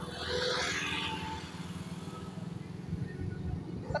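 Motorcycle engine running steadily on the move, a low even rumble, with a brief hiss in the first second.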